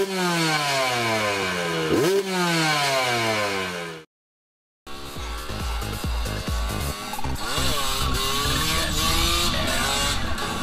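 A dirt bike engine revved in two sharp blips about two seconds apart, each time falling away slowly. After a brief break, music with a steady beat starts.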